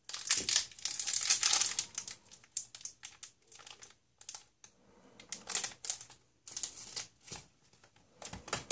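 A small clear plastic toy packet crinkling as fingers handle it. The crinkling is densest and loudest for the first couple of seconds, then comes in short scattered bursts.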